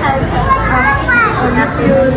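Several young children talking and calling out, their high voices overlapping.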